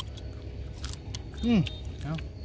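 Someone chewing grilled snail meat with lemongrass: a few short, crisp clicks of the mouth and teeth, then a brief 'mm' of approval about one and a half seconds in.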